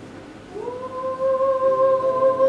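A woman humming, sliding up into one long held note about half a second in, with the faint plucked strings of a lyre fading underneath.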